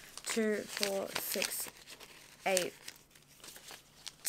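Australian polymer banknotes crinkling as they are flicked through and counted by hand, with a woman's voice counting under her breath in two short bursts.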